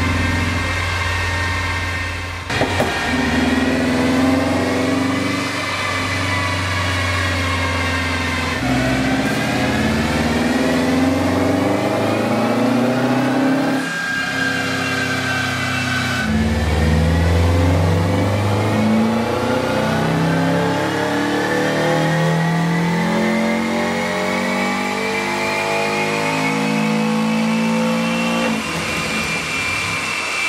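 Turbocharged 2.5-litre flat-four of a Subaru Legacy GT running full-throttle pulls on a chassis dyno during tuning. The pitch climbs steadily over several seconds, drops back suddenly, and climbs again, several times over, with the last long climb easing off near the end.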